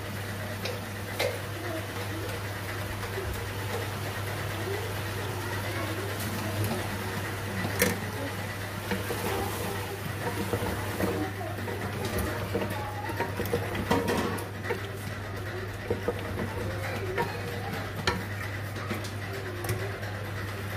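A spatula stirring cubed potatoes and minced meat in a metal pot, scraping through the food with a few sharp knocks against the pot, over a faint sizzle and a steady low hum.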